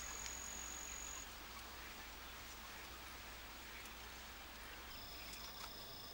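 Insects trilling: one high, steady trill that stops about a second in and another, slightly lower, that starts near the end, over a faint hiss.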